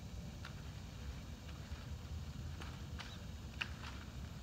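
Hand pruners snipping blackberry canes at their base: a few short sharp clicks, the loudest about three and a half seconds in, over a steady low rumble.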